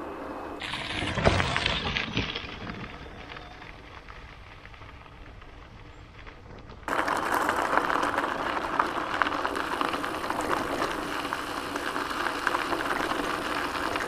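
Quiet rolling noise that fades during the first half, then, about halfway through, an abrupt switch to a steady, louder crunching hiss of bicycle tyres rolling over a gravel track.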